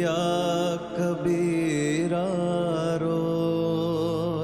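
Slow, mournful background score: a long, held melody line sung with vibrato over a steady low drone.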